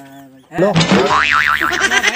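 Cartoon 'boing' comedy sound effect. It starts suddenly about half a second in, and its pitch wobbles rapidly up and down.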